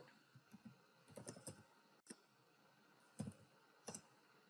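Faint computer keyboard typing: a handful of scattered keystrokes with quiet gaps between them.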